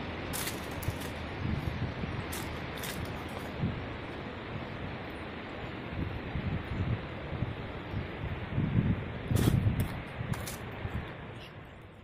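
Outdoor riverside ambience: a steady hiss with irregular low rumbles of wind buffeting the microphone and a few sharp clicks, fading out near the end.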